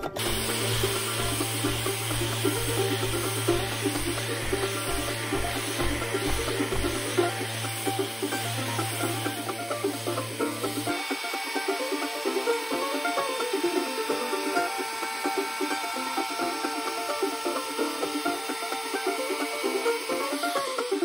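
Random orbital sander running steadily on an oak board, with a constant motor hum and sanding hiss that stop about halfway through. Background music plays throughout and carries on alone after the sander stops.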